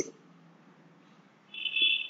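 Quiet room tone. About one and a half seconds in, a steady high-pitched beep starts and lasts about half a second.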